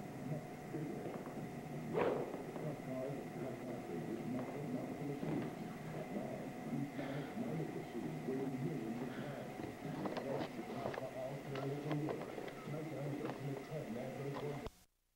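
Indistinct speech from a television programme playing in the room, over a faint steady high whine. A sharp knock about two seconds in.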